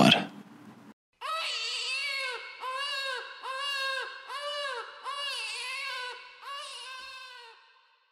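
A newborn baby crying: a run of short wails, each rising and falling in pitch, repeating about twice a second and stopping shortly before the end.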